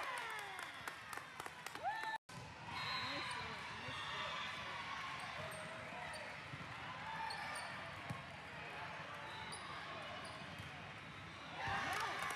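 Live sound of an indoor volleyball rally on a hardwood gym court: sharp ball hits and floor impacts, sneakers squeaking, and indistinct calls from players and spectators.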